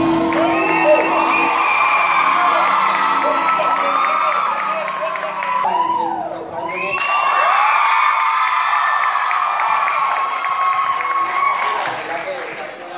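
Studio audience screaming and cheering, a dense crowd of high-pitched shrieks, with the tail of the band's music under it for the first half. The screams dip briefly about six seconds in, then swell again.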